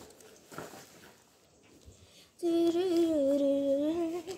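A person humming one held note for about two seconds, starting just past halfway, wavering slightly and dipping a little in pitch. Before it there is only faint rustling.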